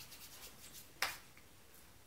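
Faint rubbing of hands together, with one sharp snap about a second in.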